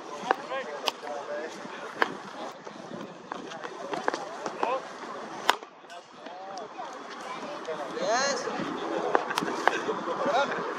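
Voices of people talking, with scattered sharp knocks of cricket balls striking bats and the hard pitch; the loudest knock comes about halfway through.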